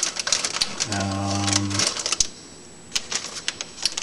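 Plastic model-kit parts and their clear plastic bags rattling, clicking and crinkling as a hand rummages through the cardboard kit box.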